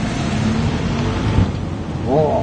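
Steady rushing outdoor noise that swells and then eases off, with a single low thump about one and a half seconds in.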